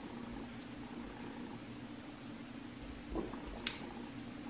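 Quiet room hiss as a person drinks a shot of liquid medicine from a small plastic dosing cup, with a soft wet mouth sound about three seconds in and a short sharp click just after.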